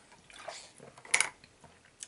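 A person drinking water: soft sipping and swallowing, with one short, sharp gulp a little over a second in.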